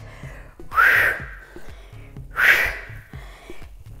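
Two hard breaths out through the mouth, about a second and a half apart: a woman exhaling with effort on squat reps while holding dumbbells. Faint background music with a low beat runs underneath.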